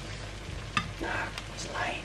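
Sauce-glazed chicken wings sizzling in a frying pan, with metal tongs clicking and scraping against the pan a few times as the wings are picked out.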